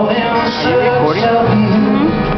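Live solo acoustic guitar played with a male voice singing over it, the pitch sliding upward in several short glides.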